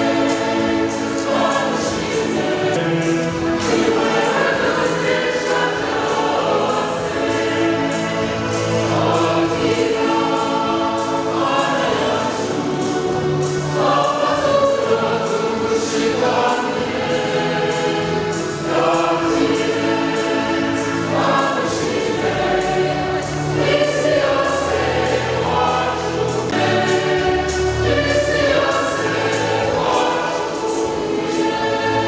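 Church choir singing a hymn, many voices together over a steady beat.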